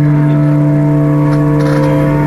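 Electric mandolin holding one long, steady note in a Carnatic performance.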